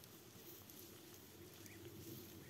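Near silence: faint outdoor ambience with a low steady hum and scattered faint ticks and crackles.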